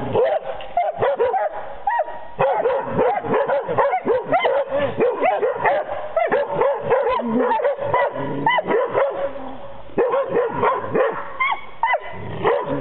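Young hunting dogs barking at a wild boar they are holding at bay: rapid, high-pitched barks and yips, several a second, that hardly break off.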